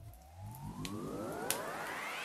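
Synthesised rising sweep from a video intro: a cluster of tones sliding steadily upward in pitch, with a sharp click about one and a half seconds in.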